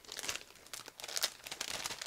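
Clear plastic packaging crinkling as it is handled, a run of quick, irregular crackles.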